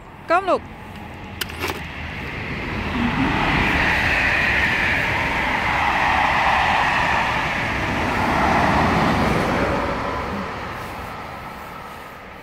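A car driving past: a steady rush of road and engine noise that builds up over a few seconds, is loudest through the middle, and fades away near the end.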